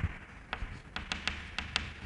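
Chalk clicking and tapping against a chalkboard as figures are written: a quick, irregular run of sharp clicks.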